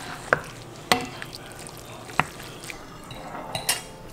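Wooden spoon stirring and tossing pasta in a skillet, with a few sharp knocks of the spoon against the pan spread through the stirring.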